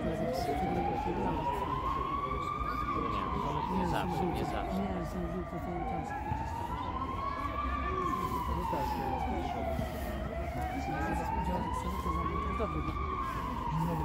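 A siren wailing, its pitch rising and falling smoothly in slow cycles of about five seconds, close to three full cycles.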